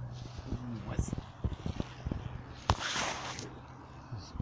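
Handling knocks and clicks as the camera and rod are moved, then one sharp click and a brief dry rustle just before three seconds, as the camera-holder brushes into dry reeds.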